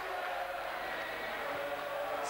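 Football crowd on the terraces, a steady hubbub with a few faint held notes.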